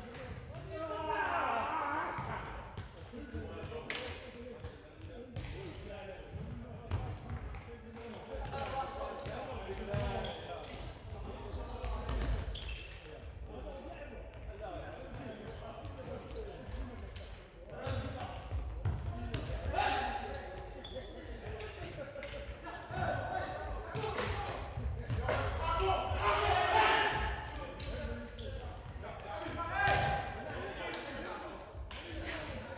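Futsal ball being kicked and bouncing on a hard sports-hall floor, with sharp knocks throughout, while players shout and call to each other. The hall gives everything a reverberant echo.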